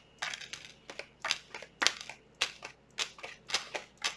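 A deck of tarot cards being shuffled by hand: a run of short, sharp rasps and slaps, about three a second at uneven spacing.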